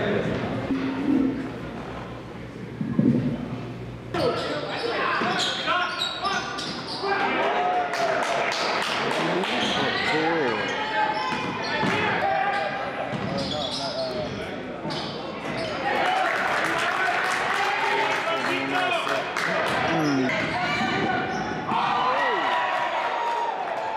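Basketball being dribbled and bouncing on a hardwood gym floor, with sneakers squeaking and players' and spectators' voices echoing in the gym. The game sounds start about four seconds in, after a quieter stretch of murmuring.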